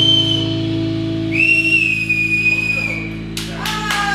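A blues band's last chord rings out from guitar and bass, with a loud, long high whistle over it, twice: audience whistling in approval. Applause starts near the end.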